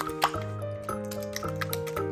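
Background music with a steady bass line, over a wire whisk beating raw eggs in a glass bowl: quick wet clicks and slaps of the whisk in the liquid egg.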